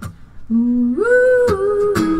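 Female singer's wordless 'ooh' vocalise over acoustic guitar: a low held note that leaps up about an octave about a second in, then steps down slightly, with a few guitar strums.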